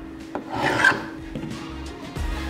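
Hand scraper blade drawn across an oak glue-up, scraping off the glue squeeze-out, with one main rasping stroke about half a second in.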